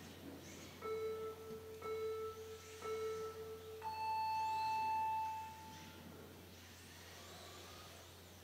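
Race start countdown beeps: three short, even beeps about a second apart, then a single longer beep an octave higher, held about two seconds, that signals the start.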